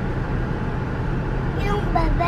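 Steady low rumble of a car moving slowly on a gravel road, engine and tyre noise heard from inside the cabin.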